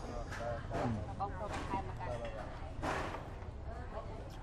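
A man slurping noodles from a bowl of noodle soup: three short slurps about a second apart, with voices talking in the background.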